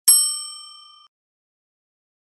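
Notification bell chime sound effect: a single bright ding, several clear ringing tones that die away over about a second.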